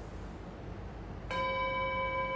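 A timer's bell chime rings out just over a second in, a steady ringing tone that holds on. It marks the end of a timed 90-second pose hold.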